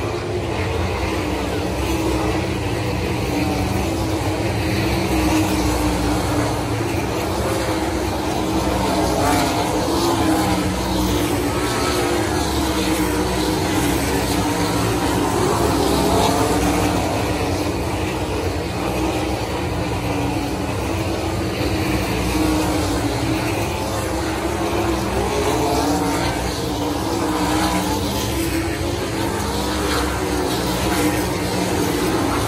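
Pack of 410 sprint cars racing, their 410-cubic-inch V8 engines running hard without pause, the drone swelling and wavering in pitch as cars pass close by.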